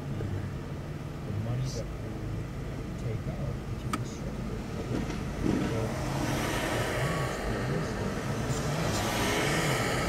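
A car's engine idling, heard from inside the cabin while stopped at a traffic light, with a steady low hum. From about six seconds in, the tyre and engine noise of cross traffic passing in front swells and grows louder toward the end.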